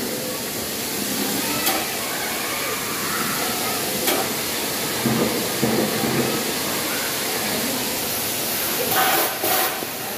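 Steady rushing hiss of air from the blowers that feed a play structure's foam-ball air cannons, with faint voices in the background.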